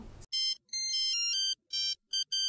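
Electronic intro jingle: a quick melody of pure beeping tones, like a ringtone, stepping from note to note with a couple of short breaks.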